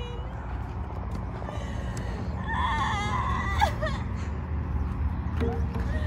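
A person's voice, wavering and wailing, whimpers briefly in the middle as mock crying, over a steady low rumble.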